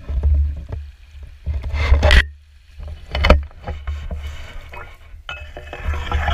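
Handling noise from a camera mounted on a fish spear: a low rumble and sloshing as the spear moves in shallow water, with sharp knocks about two seconds and three seconds in, and dry grass rustling against it near the end.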